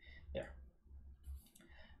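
A few faint clicks over a steady low hum.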